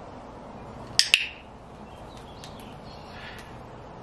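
Cockatiel giving a short, harsh squawk about a second in, the loudest thing heard, followed by a few faint clicks.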